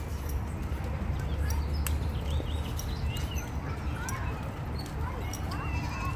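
Outdoor ambience: faint voices and scattered short, high chirps over a steady low rumble, with a few light clicks.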